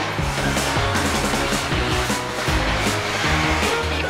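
Background music over the steady running noise of a motorized sectional garage door as it opens.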